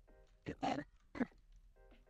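Soft background music with held chords, broken about half a second and a second in by three short, sharp animal-like calls.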